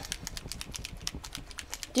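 Faint, rapid, irregular clicking.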